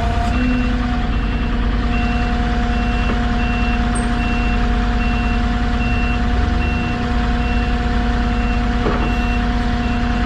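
A forklift's reversing alarm beeping steadily, about every three-quarters of a second, over the steady hum of an idling forklift engine heard from the Moffett's cab.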